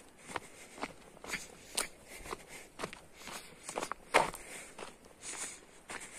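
Footsteps of a person walking at a steady pace on a dirt path, about two steps a second, one step landing louder a little after four seconds in.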